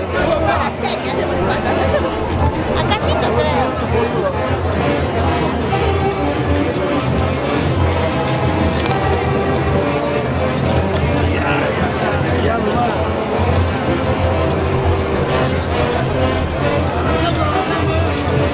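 A band plays Tunantada dance music continuously for the dancers, with crowd voices underneath.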